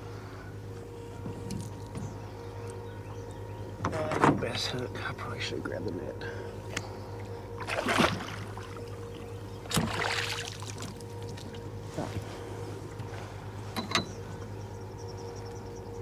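A few knocks and clatter of gear being handled in a small fishing boat, with a short splash about ten seconds in as a blue catfish is dropped back into the water. A steady low hum runs underneath.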